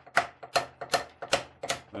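Hand hammer striking a cold chisel in steady blows, about three a second, chipping rust and old fibreglass off a galvanised steel centreboard.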